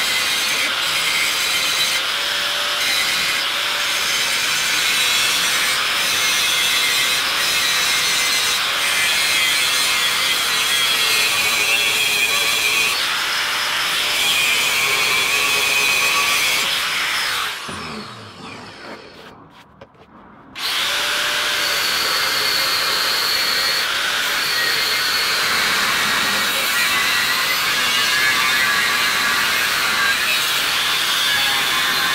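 Handheld angle grinder grinding down welds on steel box section: a steady high whine with a rasping scrape. About seventeen seconds in it winds down with falling pitch, and about three seconds later it is running at full speed again.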